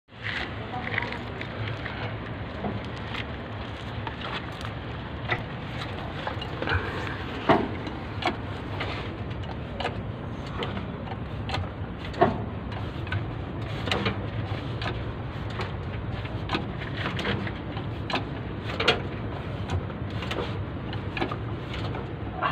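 Irregular metal clanks and knocks from work under a truck, with a bottle jack set under the leaf springs to change a flat tyre on the loaded truck, over a steady low hum.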